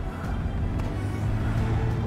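A motor vehicle's engine running with a steady low hum, under background music.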